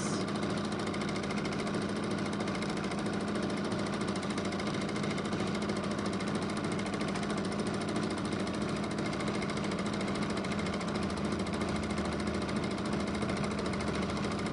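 Janome domestic sewing machine running steadily and stitching without a pause, free-motion thread painting with the fabric moved by hand.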